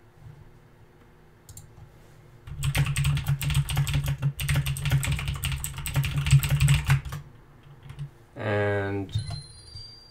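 Rapid typing on a computer keyboard: a dense run of keystrokes beginning a couple of seconds in and lasting about four and a half seconds.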